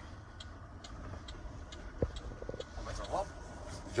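Electric truck cab running quietly with a low road rumble and a turn-signal indicator ticking evenly, about two ticks a second, with a single sharper click about two seconds in.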